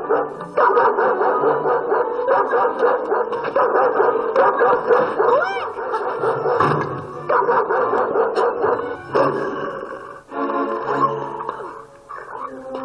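Music and sound effects from a cartoon playing on a television in the room, sounding dull and muffled, with brief drop-outs near the end.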